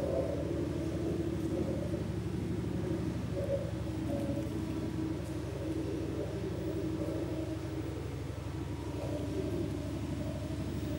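A steady low hum and rumble with a wavering murmur above it.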